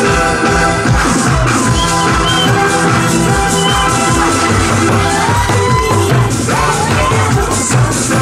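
Janggu drums struck with sticks in live playing over a loud electronic dance-beat backing track with a steady beat.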